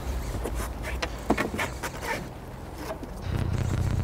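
Low steady hum of a boat motor, fading about a second in and returning near the end, with scattered knocks and clicks of handling aboard a small fishing boat while a hooked fish is played on a rod and reel.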